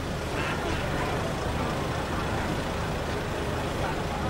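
Busy street ambience: a steady low rumble of idling and slow-moving vehicles, with a crowd chattering.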